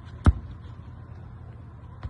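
A single sharp thump of a foot kicking a ball, about a quarter second in, over a steady low background rumble.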